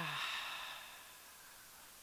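A woman's loud open-mouthed "ha" exhalation: a breathy rush of air that fades out over about a second. It is a yogic breathing exercise, the breath pushed out through the mouth to let go.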